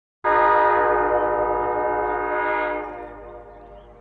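Reading and Northern train horn: one long, loud blast of several tones sounding together, held for about two and a half seconds, then fading away near the end.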